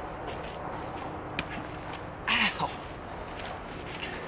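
A person cries out "Ow!" a little past halfway, a short cry that rises and then falls in pitch. The background is otherwise quiet, with one sharp click about a second earlier.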